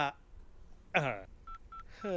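A mobile phone's keypad tones: about three short, identical beeps in the last half-second as a number is dialled. Before them a man's voice makes two brief falling sounds.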